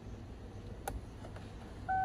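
A single sharp click as a new 10-amp fuse is pressed into the Kia Sorento's interior fuse box. Near the end the car's electronic warning chime starts, a steady beep tone: power is back on the circuit whose blown fuse had left the clock and dash lights dead.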